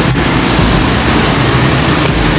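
A steady, loud rush of rain falling, mixed with the hum of city traffic.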